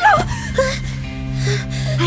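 Background music: a low, steady held tone with faint higher notes. It comes in right after a wavering high vocal breaks off in a short falling gasp at the very start.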